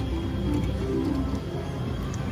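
Casino slot machine spinning its reels: a few short electronic tones over a steady low hum.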